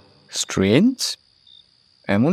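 Crickets giving a steady high-pitched chirr as background ambience, with a short spoken phrase about half a second in.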